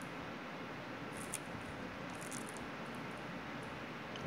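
Faint crinkling of a clear plastic comic bag being handled: a few soft crackles about a second in and again a little after two seconds, over steady room hiss.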